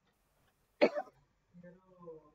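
A person clears their throat once, a short sharp burst in two quick pulses a little under a second in, followed near the end by a faint voice.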